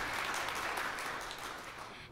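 Audience applauding, the clapping fading away toward the end.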